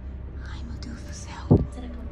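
Whispering over a steady low hum, with a single short, loud low thump about one and a half seconds in.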